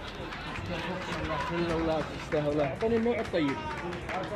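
Unscripted voices talking with busy background noise: speech that the recogniser did not transcribe, louder in the second half.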